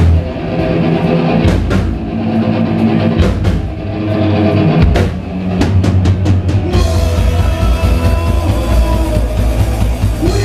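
Ska-punk band playing live on stage, with drum kit, bass and electric guitar and no singing. About seven seconds in, the full band comes back in with crashing cymbals and a fuller guitar sound.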